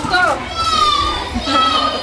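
Children's voices at play: a short high call falling in pitch, then two long, high-pitched squeals, over background chatter.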